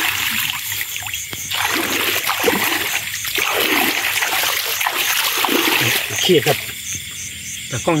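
Water splashing and sloshing as a hand gropes about in a shallow ditch, loudest through the middle few seconds. Insects chirp in a steady pulse behind it.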